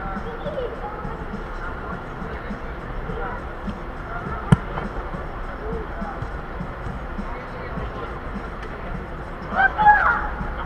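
Players' distant shouts echoing in a large indoor football hall over a steady low hum, with one sharp ball strike about four and a half seconds in and a louder shout near the end.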